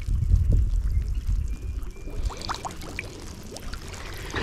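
Choppy reservoir water sloshing and lapping right at a microphone held at the surface, with a heavy low rumble in the first half and small splashes and droplet sounds about two seconds in.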